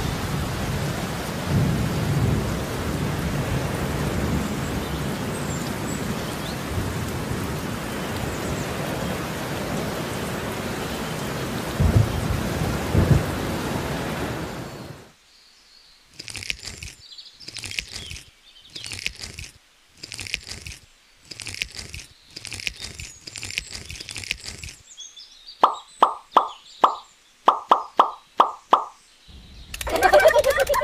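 Steady hiss of rain with low rumbles of thunder that cuts off abruptly about halfway through. Then come short scraping strokes, roughly one a second, and near the end a quick run of about eight sharp, ringing clicks.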